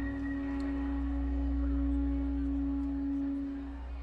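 Live rock band's closing held note: one steady sustained tone over a low bass drone, the song's rhythm having stopped, fading away near the end.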